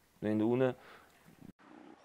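A man's voice making one drawn-out, held vowel sound, a hesitation like 'eh', lasting about half a second, followed by a pause.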